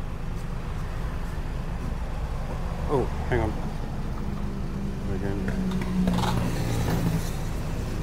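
Steady low rumble of road traffic and vehicle engines, with one engine's hum standing out more clearly from about four to seven seconds in.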